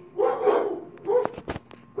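A dog barking, two barks, the second shorter, followed by a few sharp clicks.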